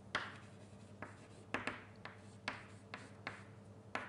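Writing on a lecture board: a quick, uneven run of sharp taps and short scratchy strokes as symbols are written.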